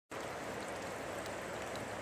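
Steady, even rush of river water flowing.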